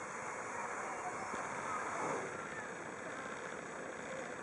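Geyser fountain's tall water jet running: a steady rush of spraying and falling water.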